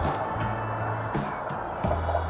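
Background music with held low bass notes.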